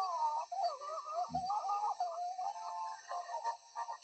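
Children singing a tune over music from a TV show, heard through a television's speaker. There is a single low thump about a second in.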